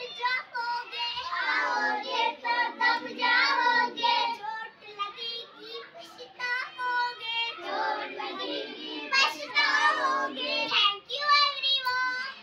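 A group of young kindergarten children singing a rhyme together, in a steady run of short sung phrases.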